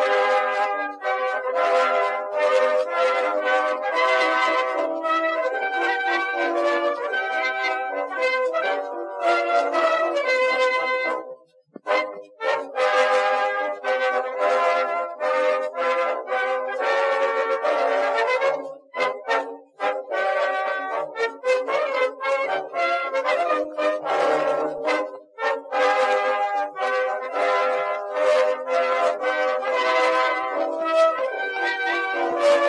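Instrumental brass band music, trumpets and trombones playing continuously, with a short break about eleven and a half seconds in.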